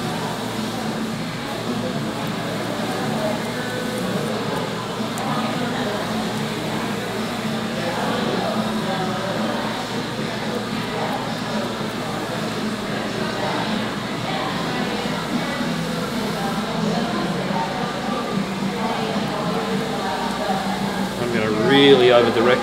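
Steady background music with a voice or singing in it.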